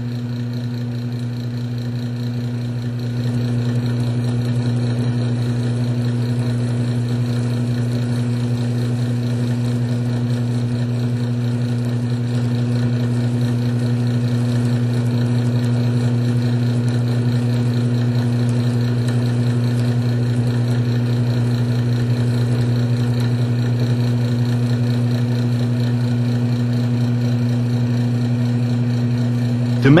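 Electric drive motor of a cross-axis lubricant test machine running with a steady hum under load, a little louder from about three seconds in. The test bearing turns without squeal or grinding: the lubricant, even with water in it, is holding.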